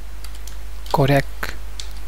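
Computer keyboard typing: a handful of scattered keystroke clicks over a steady low hum.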